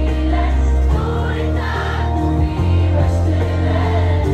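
Loud pop music from the stage sound system, with a heavy bass line that changes note every second or two, and many voices singing along.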